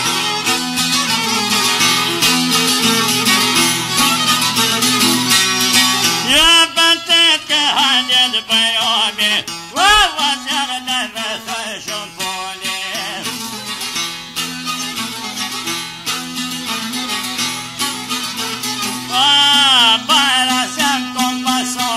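Albanian folk music: a plucked long-necked lute plays steadily throughout. A man's voice sings phrases about six seconds in, around ten seconds, and again near the end.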